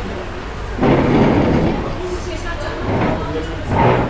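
Indistinct voices talking, with a sudden louder, noisy burst about a second in that lasts under a second.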